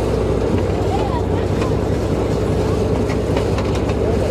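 Boat engine running steadily, with faint voices of people around it.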